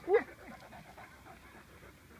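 Great Dane giving one short, sharp whine a quarter-second in that rises and falls in pitch, then panting quietly.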